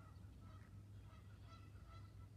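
Faint, short calls of farm fowl, several in a row, over a low steady hum.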